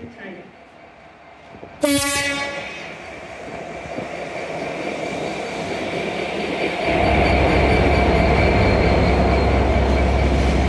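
Class 66 diesel locomotive giving one short horn blast about two seconds in as it approaches, then the noise of the locomotive building as it draws alongside. From about seven seconds in there is a loud, steady low rumble of empty container flat wagons rolling past.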